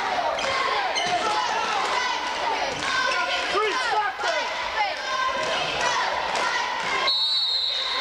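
Basketball game in a gym: sneakers squeak on the hardwood floor, a ball is dribbled, and spectators shout throughout. Near the end a referee's whistle blows, one steady shrill blast lasting almost a second.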